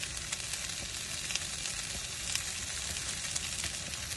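Food frying in a pan on a camping stove: a steady sizzle broken by small crackles.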